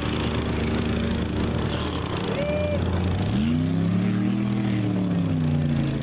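Engine of a lifted four-wheel-drive mud truck running under load through a mud pit, revving up and back down once about halfway through.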